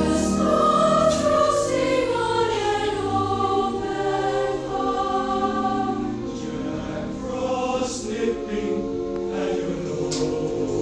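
School chorus singing with a concert band accompanying it, the melody falling over the first few seconds.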